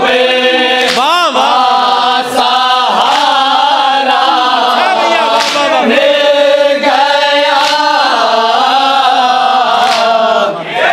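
A chorus of men chanting a noha, a Shia lament for Karbala, in unison without instruments. The singing is loud and unbroken.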